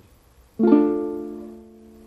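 Venezuelan cuatro strummed once in a D minor chord about half a second in, the chord ringing and slowly fading.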